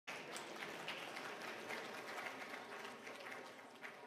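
Audience applause, many quick overlapping claps, dying away near the end.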